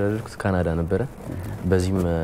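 Speech only: a low-pitched voice talking in the studio conversation.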